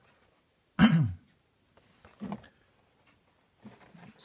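A man clearing his throat once, sharply, about a second in, followed by a softer, shorter vocal sound a second later.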